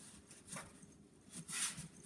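Faint rubbing of a cloth wiped over a varnished wooden cabinet lid, two short brushing sounds, the second a little louder and hissier, as squeezed-out glue is wiped off the re-glued veneer.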